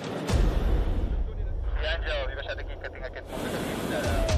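Wind buffeting the microphone high in the air, a deep steady rumble that sets in just after the start, with brief voices in the middle.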